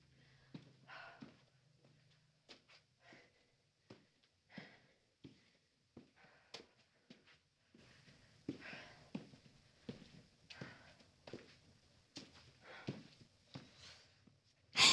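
Near silence broken by a woman's faint breaths and sniffs and small clicks of movement, coming more often in the second half.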